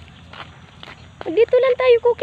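A few faint footsteps on concrete, then about a second in a woman's high-pitched voice calling out loudly to a dog.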